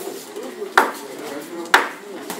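Two sharp smacks about a second apart, each with a brief ringing tail, over a low murmur of voices.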